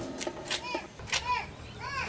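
Faint children's voices in the background: a few short, high, rising-and-falling calls, with a couple of light taps.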